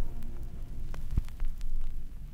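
Low steady hum with a few thin clicks scattered through it, after the music has ended.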